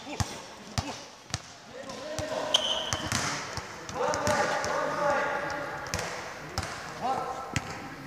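Basketball being dribbled on a sports hall floor: a series of sharp bounces, with voices talking through the second half.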